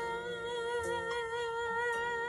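A woman's voice holding a long wordless high note with steady vibrato, over a soft instrumental backing.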